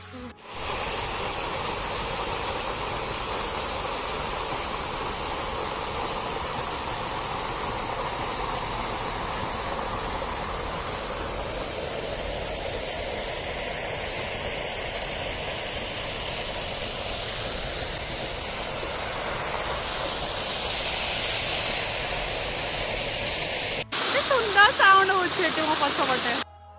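Steady rush of falling water, a park fountain's jet splashing down into a pond. About 24 seconds in it cuts abruptly to a louder passage with a voice.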